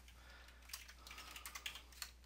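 Faint typing on a computer keyboard: a few scattered key clicks as a quantity is keyed in, over a steady low hum.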